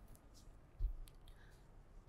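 A quiet pause holding a single soft low thump a little under a second in, with a few faint clicks around it.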